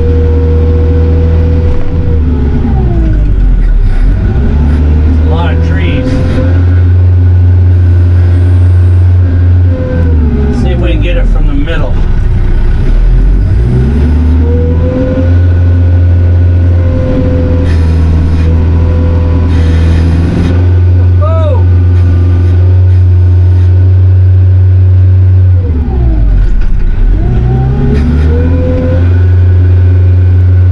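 Kioti RX7320 tractor's four-cylinder diesel engine heard from inside the cab, working hard as the front loader pushes a heavy slash pile of logs and brush. Its pitch sags and recovers several times as the load comes on and eases.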